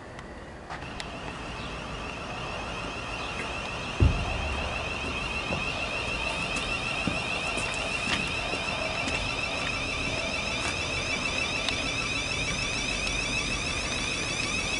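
Class 707 electric multiple unit approaching on the track, its high-pitched electric whine getting louder over the first few seconds, with a few sharp clicks. A loud low thump comes about four seconds in.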